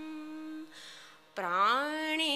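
A solo voice singing a Sanskrit prayer chant holds a long note that fades away about half a second in. After a brief pause, the next phrase starts with a smooth upward slide in pitch and settles on a held note.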